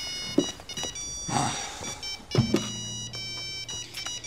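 Phone ringing with an electronic ringtone of beeping notes at several pitches, with a sharp knock and then a thump partway through.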